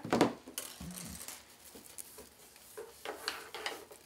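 Soft handling noises: a short rustle or clatter at the start as the wire cutters are put down, then, about three seconds in, a cluster of rustles and crinkles as the floral wire and metallic deco mesh of the wreath are worked by hand.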